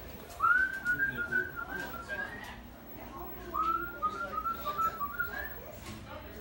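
A person whistling a tune in two short phrases. Each phrase opens with an upward swoop and runs on in short, quick notes that climb higher at the end.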